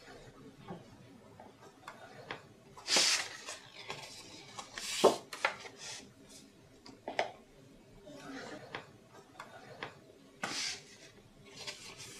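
Bone folder drawn along the groove of a scoring board, scoring a crease into cardstock: several short scraping strokes a second or two apart, with paper rustling as the sheet is handled.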